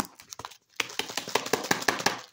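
Grapes rattling and knocking inside a lidded plastic food container being shaken to coat them in jello powder: a few clicks, then a rapid clatter from about a second in.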